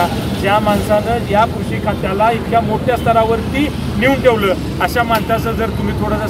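A man speaking without pause, with steady road traffic noise underneath.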